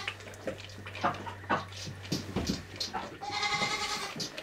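A goat kid sucking milk from a bottle, with soft scattered suckling clicks, then one short goat bleat near the end.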